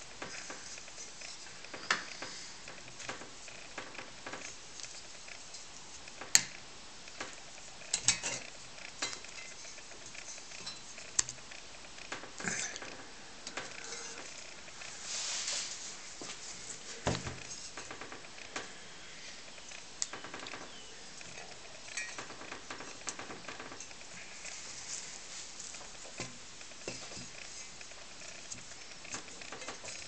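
Brass parts of an Optimus 415 paraffin blowtorch being handled during reassembly: scattered clicks and light metal clinks, the sharpest about six seconds in, with a cloth rubbing over the brass.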